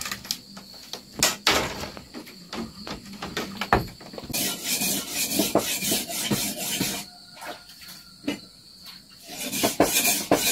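Hand-handling noises: scattered light clicks and knocks in the first few seconds, then stretches of rasping rubbing from about four seconds in and again near the end, as fishing line is worked through the hands.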